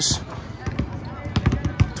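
Several basketballs bouncing on a hardwood court, a string of irregular thuds with the sharpest one near the end.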